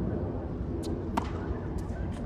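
Tennis ball struck and bouncing: two sharp pops about a third of a second apart, the second louder with a brief ring, over a steady low background rumble.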